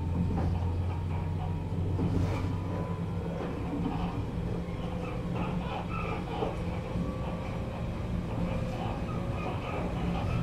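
Running sound inside a 413 series electric multiple unit motor car: the steady rumble of the wheels on the rails and the running gear, with a faint whine from its MT54 traction motors. The whine rises slightly in pitch near the end, and a deep hum drops away about three seconds in.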